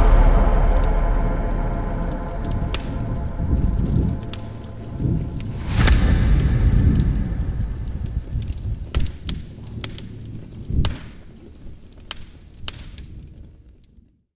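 Closing sound design of a video soundtrack: a low rumble with a few scattered sharp hits and one louder swell about six seconds in. It dies away gradually to nothing by the end.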